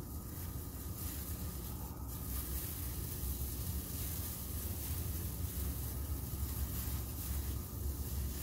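Gas burner of a hot-air balloon thermal inflator running steadily under its metal chimney: a low rumble with an even hiss as hot air fills a mylar model balloon.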